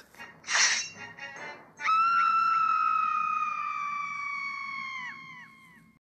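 Cartoon characters screaming in shock: a short sharp burst, then a long held group scream that slowly sinks in pitch and fades, the voices dropping out one after another near the end.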